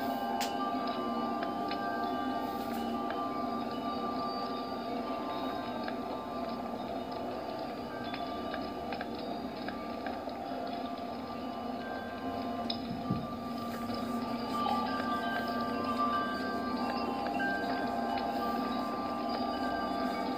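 Soft dramatic background score from a television drama: layered sustained notes held steadily, with a few faint chime-like notes over them.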